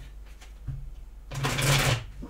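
A deck of tarot cards being shuffled by hand, with a half-second burst of rapid card riffling near the end.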